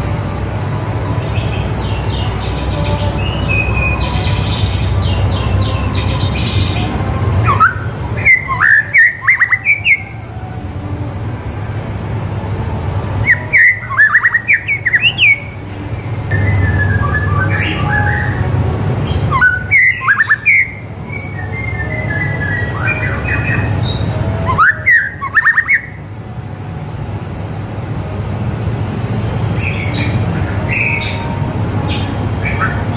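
White-rumped shama singing vigorously. Four loud bursts of rapid, sharp, sliding whistled notes come roughly every five to six seconds, with softer twittering notes between them.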